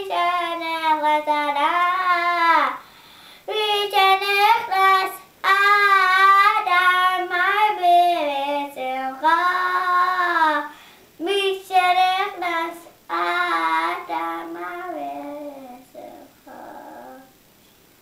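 A young boy singing in a high voice, long wavering phrases broken by short breaths, trailing off about two seconds before the end.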